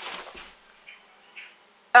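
Brief rustle of clothing as a boy ducks down quickly, fading within about half a second, then two faint soft rustles.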